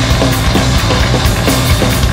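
Loud free-improvised rock from a guitar, bass and drum trio: the drum kit plays a dense, driving pattern over heavy bass and electric guitar. A short low note bends downward, recurring two to three times a second.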